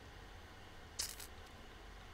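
Near silence, broken once about a second in by a brief, faint, high-pitched click.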